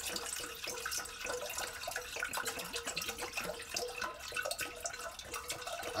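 Water pouring in a steady stream from a large jug into a stainless steel cooking pot, splashing and gurgling, with a faint steady ring from the pot.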